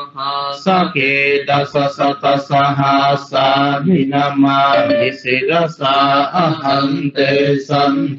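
A male voice chanting Buddhist Pali verses in a steady, mostly level-pitched recitation, in short phrases with brief breaks.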